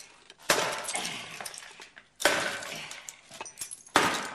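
Two loud crashes of something breaking and shattering, about two seconds apart, each trailing off in a clatter of falling pieces, then a single sharp knock near the end.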